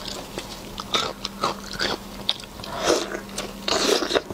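Close-miked wet biting and chewing of soft braised pork intestine: a run of short smacking clicks, with the loudest, longer bites about three seconds in and near the end. A faint steady hum runs underneath.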